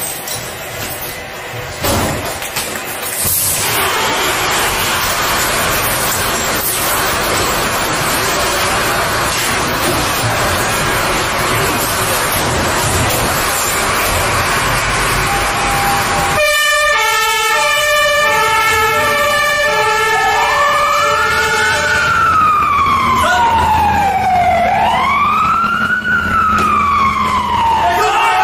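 Fire engine siren: a rapid stepped pattern of tones starts suddenly a little over halfway in, then turns into a wail that rises and falls. Before it there is a steady rushing noise.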